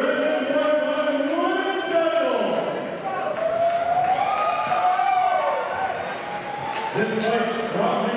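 A man's voice over a public-address system echoing in a large hall, with long drawn-out words that glide up and down in pitch.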